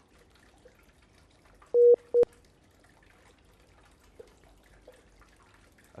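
Two short beeps of a telephone line tone, close together about two seconds in, the second ending in a click: the sound of the phone call dropping. Otherwise near silence on the line.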